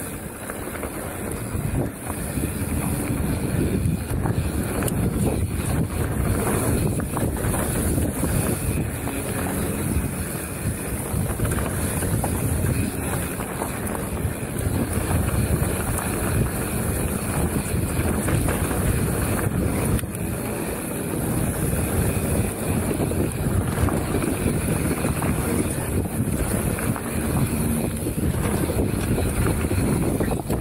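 Wind buffeting an action camera's microphone while a mountain bike descends a dirt and gravel trail, with steady tyre noise and constant small rattles from the bike over the bumps.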